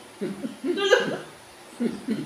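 A woman laughing in short voiced bursts, a longer spell in the first second and a brief one near the end.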